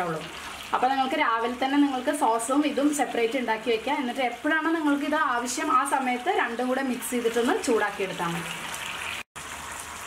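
A woman talking over a low sizzle of sauce cooking in a frying pan as it is stirred. The sound cuts out briefly just before the end.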